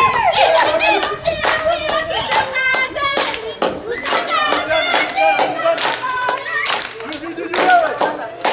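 A group of people singing a Swahili song together, with steady rhythmic hand clapping of about two to three claps a second keeping the beat.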